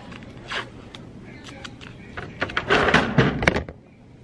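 Rustling and clicking handling noise, loudest in a busy cluster from about two and a half to three and a half seconds in.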